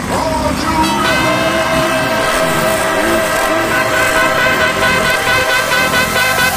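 Underbone motorcycle engines revving up and down as the bikes race on the track. Electronic music with held synth notes comes in about a second in and grows more prominent.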